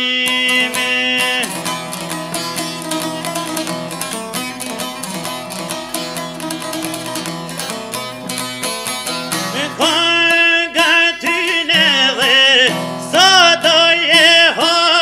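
A man singing an Albanian folk song to his own long-necked lute. A held sung note ends in the first second or so, then comes a purely instrumental passage of rapid plucked strumming, and the voice comes back in about ten seconds in.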